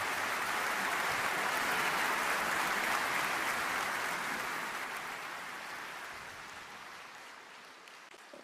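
Audience applauding, steady at first and then fading away over the last few seconds.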